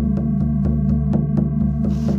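Electronic meditation drone: steady low humming tones with a fast, even throb of about five pulses a second. Near the end a soft hiss swells in over it.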